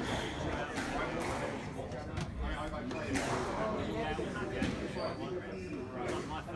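Squash ball struck by racquets and rebounding off the court walls during a rally: sharp knocks at irregular intervals, about a second or so apart, over a background of voices.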